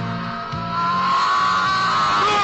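A car's tyres squealing as it pulls away, a whine that rises in pitch, over background music with a low, steady beat.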